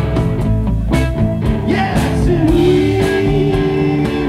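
Live rock band playing, with two electric guitars, bass guitar and drums. A held note rises into the mix about halfway through.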